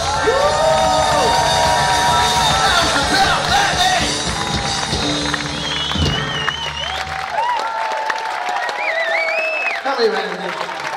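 Live rock band with drum kit ending a number, the low band sound dropping away about seven seconds in, while the crowd cheers, whoops and applauds.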